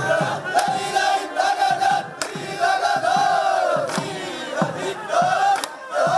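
A large group of men chanting and shouting together in repeated rhythmic phrases: the call-and-response cries of an Aranmula snake-boat crew in procession.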